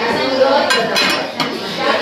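Glass lid clinking against a ceramic serving dish as it is lifted and set back down: a few sharp clinks about the middle, over background voices.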